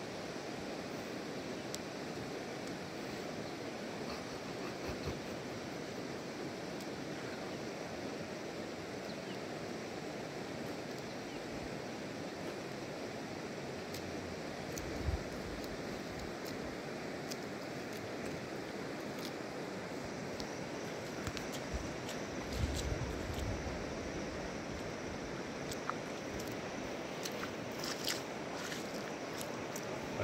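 Bare feet stepping in wet mud, with a low thud about halfway through and a cluster of thuds a little later, over a steady rushing outdoor noise.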